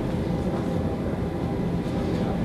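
Steady low hum of the meeting room's ventilation system.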